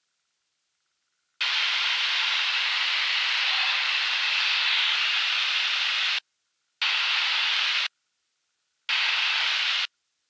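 Three bursts of hiss on the aircraft's radio and intercom audio: a long one of nearly five seconds, then two of about a second each, each switching on and cutting off abruptly like a squelch opening and closing.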